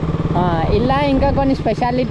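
Sport motorcycle engine running steadily with a low rumble while being ridden on a dirt track. A man talks over it from about half a second in.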